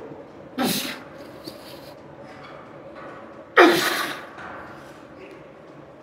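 A man's forceful breaths of effort while lifting a weight: a short, sharp exhale under a second in, then a louder, longer one about three and a half seconds in.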